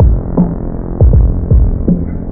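Hardcore boom bap hip-hop instrumental: deep kick drums that drop in pitch and sharper snare-like hits over a sustained low bass. The top end is cut off, so the beat sounds muffled.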